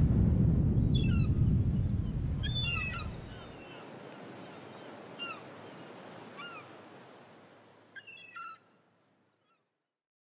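Seaside sound effect: a wave surges and washes back, fading out after about three seconds, while birds give short calls now and then, with a last quick cluster of calls near the end.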